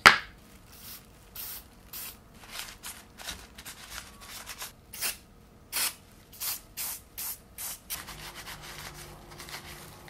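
WD-40 aerosol spray going into a laptop cooling fan in a rapid series of short bursts, about two a second, to lubricate the noisy fan. A louder burst comes right at the start.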